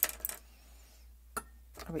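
A sharp clink, then a short run of light clicks, and one more click about a second and a half later, as a small hard object is set down on the painting table.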